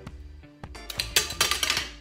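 Background music, with a loud burst of rustling and tearing about a second in as clear tape and wrapping paper are handled on a gift.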